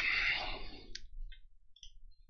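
A breathy exhale, like a sigh, fading out over the first second, followed by a sharp click about a second in and a few fainter small clicks.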